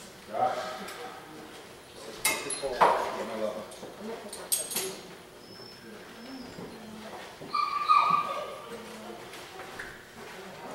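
Dog in a weight-pull harness whining and yipping while it waits to pull, with one loud high whine about 8 seconds in. A few sharp clicks and knocks come in the first half, as the dog is hitched to the cart.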